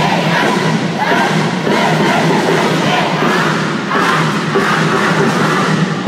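Loud music with a group of young voices shouting and chanting along, steady throughout.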